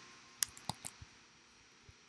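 Four faint, quick clicks of a computer mouse, bunched within about half a second shortly after the start.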